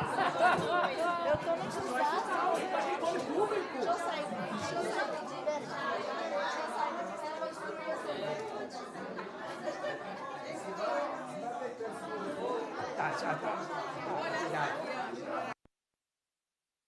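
Chatter of a crowd of people talking at once in a large hall, many overlapping voices with no single speaker standing out. It cuts off suddenly near the end.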